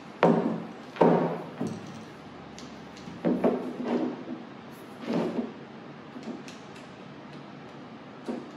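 Knocks and rattles of a camera tripod and monopod being handled and assembled on a table, as the column sections are twisted and the pole is fitted to the tripod head. About half a dozen sharp knocks come in the first five or so seconds, the loudest two within the first second, then only faint handling noise.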